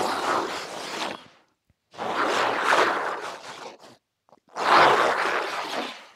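Three zombie growls, made from a man's voice processed through the Krotos Dehumaniser Simple Monsters plugin. Each lasts about one and a half to two seconds, rough and noisy with little clear pitch, with short silent gaps between them.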